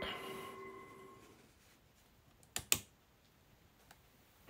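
A faint steady tone fades out within the first second. About two and a half seconds in come two sharp clicks in quick succession.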